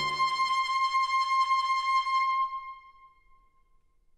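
A single high note from one brass-band instrument held alone after the full band cuts off, then fading away about two and a half seconds in, leaving near silence.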